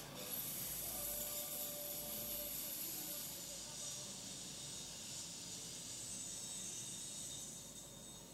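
A steady high-pitched hiss of noise from the projected film's soundtrack, setting in just after the start and slowly thinning toward the end.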